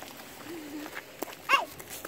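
Brief vocal sounds from young children running: a short low hum about half a second in and a quick rising-and-falling cry about one and a half seconds in, with light footsteps on the pavement.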